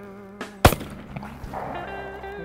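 A single shotgun shot fired at a thrown clay target, sharp and loud, about two-thirds of a second in, with a short echo after it.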